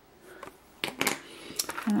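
A few sharp clicks of hard resin charms knocking together, starting about a second in, followed by a woman's voice starting to speak near the end.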